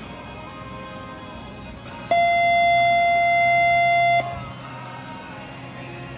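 One loud, steady electronic horn tone lasting about two seconds, starting and stopping abruptly, over background guitar music. It is typical of a show-jumping ring's signal to start the round.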